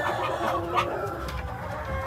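Aseel game chickens clucking in a steady run of short calls.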